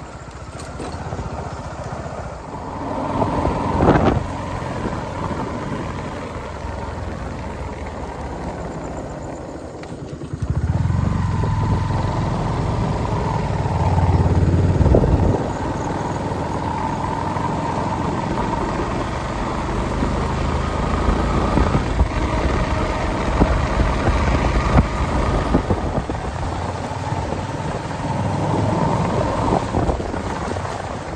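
Motorcycle engine running while riding, with steady road noise and a brief knock about four seconds in. From about ten seconds in, the engine's low rumble grows louder for several seconds, then settles back to a steady run.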